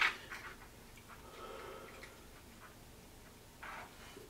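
Faint handling sounds of a carved honeydew melon and a small light: a sharp knock at the very start, then light ticks and rustles, and a short soft rustle near the end.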